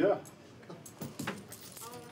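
Metal handcuffs and their chain jangling, with a few light clinks about a second in.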